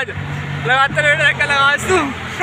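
A man talking over the steady low hum of a road vehicle's engine, which fades near the end.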